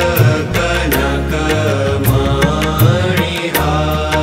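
Indian devotional hymn (stotram) music: a gliding melodic line over regular percussion strokes and sustained bass notes.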